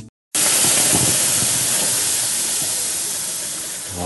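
Steam hissing loudly as water hits the hot stones of a sauna stove. It starts suddenly about a third of a second in and slowly dies down.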